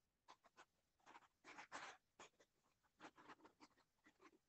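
Near silence, broken by faint, scattered short scratching noises, with a small cluster of them about a second and a half in.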